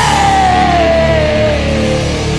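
Heavy metal band playing loud, dense music, with a single long note sliding slowly down in pitch over about two seconds.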